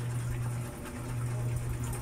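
A steady low hum under faint background noise, dipping briefly just before the middle.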